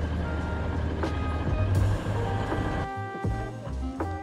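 Alishan Forest Railway diesel train running at a station, its rumble and rail noise under background music; the train noise stops abruptly about three seconds in, leaving only the music.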